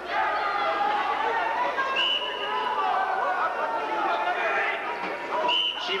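Chatter of many voices in an arena crowd, talking over one another. Two short high-pitched steady tones, one about two seconds in and one near the end.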